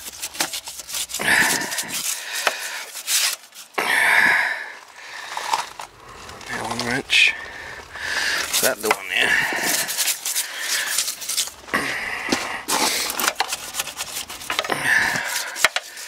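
A stiff hand brush scrubbing the oil-coated sheet-metal base pan of an air-conditioning condenser unit, in quick repeated back-and-forth strokes.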